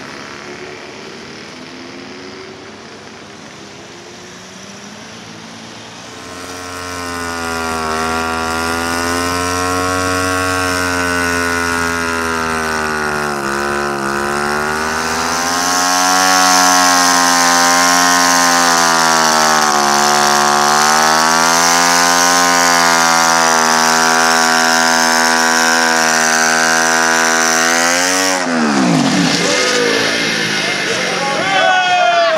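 Motorcycle engine revved up about six seconds in and held at high revs for some twenty seconds, its pitch wavering up and down, then dropping sharply away near the end.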